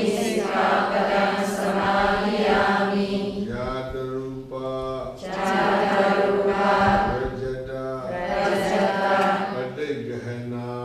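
A group of Buddhist nuns chanting together in unison, in long held notes, with a short pause for breath about halfway through.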